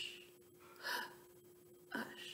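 A woman voicing the separate sounds of the word "hush" as short, breathy "h" and "sh" hisses, about a second apart. A faint steady hum runs underneath.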